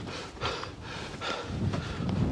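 A man's breathy laughter and breaths close to the microphone, with wind rumbling on the mic.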